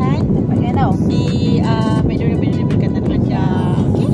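Loud, steady low rushing hum of an air conditioner running throughout, with short snatches of voice or singing over it.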